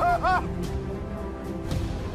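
A man yelling: two short, quick shouted cries right at the start, each rising and falling in pitch, over steady background music.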